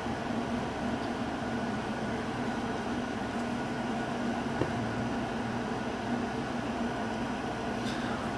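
Steady mechanical hum of room background noise with a faint low drone, and a single faint click about halfway through.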